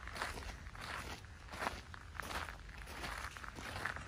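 Footsteps crunching on a gravel path, about two steps a second, over a low steady rumble.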